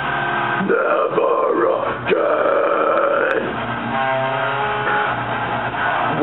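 Harsh screamed metal vocals into a handheld microphone over a guitar-driven backing track. The screaming comes in less than a second in and runs for about three seconds, then the guitars carry on alone near the end.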